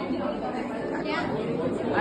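Chatter of several people's voices in a large hall, with one voice standing out about a second in.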